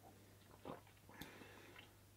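Faint mouth sounds of sipping and swallowing beer from a glass, a soft gulp about two-thirds of a second in and a small click with soft noise a little later, over near silence with a low steady hum.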